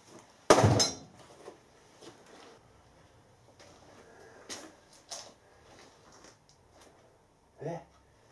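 A steel spanner clanks against metal at the lathe: one loud, ringing clank about half a second in, then a few faint clicks and a short knock near the end.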